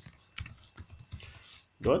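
Typing on a computer keyboard: a quick run of separate key clicks.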